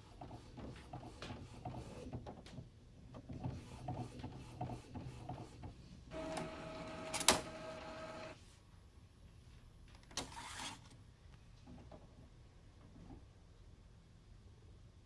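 Epson P50 inkjet printer's mechanism clicking and whirring as it feeds the printed CD/DVD tray out, then a steady motor whine for about two seconds, broken by one sharp click. A short burst of scraping noise follows about ten seconds in as the tray is handled.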